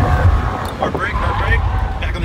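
Engine and road noise of a Ford police sedan heard from inside the cabin as it drives a cone course, a steady low rumble throughout, with a brief voice about a second in.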